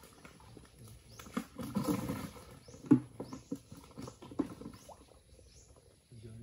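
Water splashing and dripping with irregular pattering taps as fish are shaken from a hand net into a plastic basin, with the busiest splashing about two and three seconds in.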